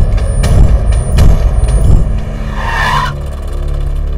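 A loud motor-vehicle rumble, strongest in the first two seconds and then easing, with a brief higher-pitched sound near three seconds in, over steady film background music.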